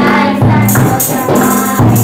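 A group of children singing a Christian worship song into microphones over backing music, with bright jingling percussion keeping a steady beat.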